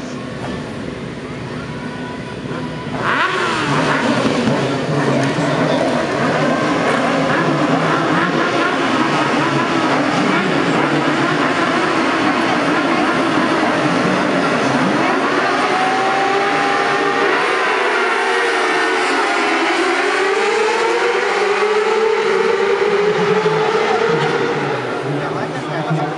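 A pack of 600cc supersport racing motorcycles revving and accelerating hard. The sound jumps up sharply about three seconds in as the field gets going, then stays loud with many overlapping engine notes rising and falling.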